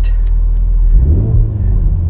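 Ford Focus RS's 2.3-litre EcoBoost four-cylinder engine idling, heard from inside the cabin, rising in a short rev about a second in and then falling back.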